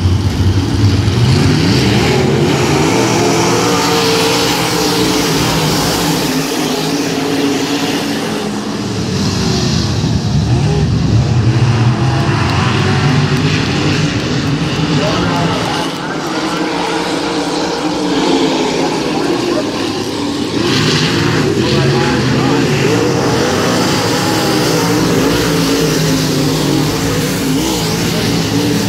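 A field of dirt modified race cars' V8 engines running around the oval, their pitch rising and falling as the cars accelerate and ease off through the laps, dipping briefly in loudness a few times.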